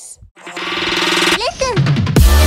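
Electronic outro music starting: a stuttering synth build-up that swells in loudness from about half a second in, with short gliding pitches near the end, building toward a heavy bass drop.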